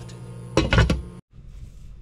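A lid set onto a stainless steel cooking pot, a short clatter of metal clinks, then the sound cuts off suddenly.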